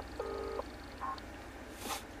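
Telephone ringback tone through a phone's speaker: the line is ringing while the call waits to be answered, in the short double-pulse ring used in New Zealand. One pulse ends about half a second in. A brief hiss comes near the end.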